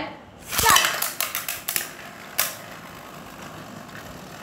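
Two Beyblade Burst spinning tops, Zillion Zeus and Achilles, launched into an aluminium pan: a burst of metallic clattering about half a second in as they land and clash against each other and the pan wall, a few more sharp clicks, one last knock after two seconds, then a quieter steady whirr as they spin.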